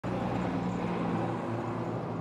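Street traffic: a motor vehicle's engine running with a steady low hum over road noise.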